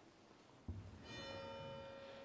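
A church bell, heard faintly, is struck about two-thirds of a second in with a dull thud and rings on in several steady tones. It is rung as the congregation turns to prayer.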